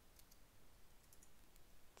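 Near silence with a few faint keystroke clicks from a computer keyboard as a short terminal command is typed.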